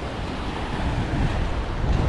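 Wind buffeting the microphone in a steady low rumble, over waves washing against the boulders of a seawall.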